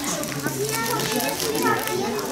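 Children and adults chattering at once, several voices overlapping, with children's higher voices standing out.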